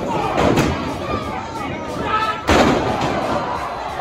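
Two heavy, echoing slams about two seconds apart, the second louder: wrestlers' bodies crashing onto the wrestling ring and its boards. Crowd voices shout throughout.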